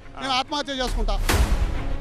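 A man's voice briefly, then a deep cinematic boom sound effect that swells just under a second in and strikes sharply about halfway through, ringing on under background music as the picture cuts.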